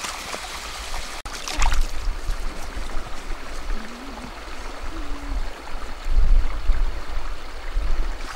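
A shallow stream running and trickling over stones, a steady wash of water noise. Bursts of low rumble come and go over it, loudest about six seconds in.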